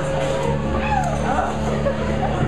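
Amplified electric guitar and bass ringing out: a held low note with a few sliding pitch sweeps, rising and falling, around the middle.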